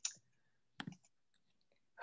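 Near silence broken by two faint, short clicks, one right at the start and a sharper one a little before the middle.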